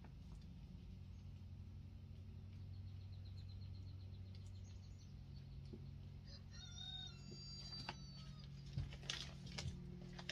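A steady low hum, with a short bird call of a few quick chirps about seven seconds in. A few light knocks come near the end.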